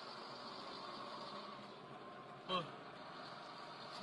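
Steady road and engine noise inside a moving car's cabin, with a short falling exclamation from a passenger about two and a half seconds in.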